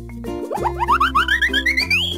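Children's background music with a cartoon sound effect over it: from about half a second in, a rapid run of short rising boings, about eight a second, each pitched higher than the last.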